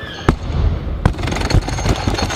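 Loaded barbell with Eleiko bumper plates dropped onto a lifting platform: a loud bang about a quarter second in, then smaller knocks and rattling as the bar bounces and settles.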